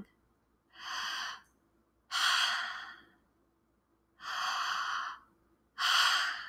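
A woman breathing deliberately and audibly close to the microphone: four slow breaths, each about a second long, with short pauses between them, as in two in-and-out breath cycles.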